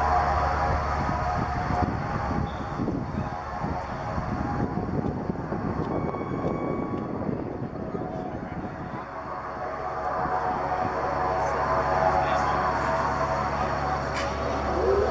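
Beechcraft King Air C90's twin PT6A turboprop engines running as the aircraft rolls out on the runway after landing: a steady propeller and turbine drone that dips about two-thirds of the way through and then builds again.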